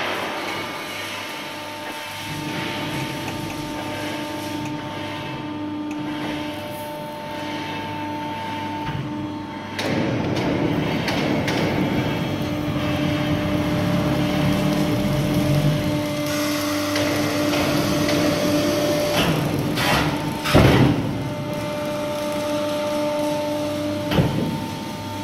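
400-ton hydraulic press brake (WC67Y-400T/4000) running, its hydraulic pump giving a steady hum that grows louder and busier about ten seconds in as the machine works the sheet. A single sharp knock comes about twenty seconds in.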